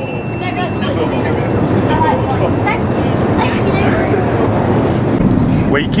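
Steady roar of an airliner cabin in flight: engine and airflow noise, with faint voices murmuring underneath.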